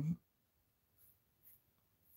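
A woman's voice trails off at the very start, then near silence: room tone.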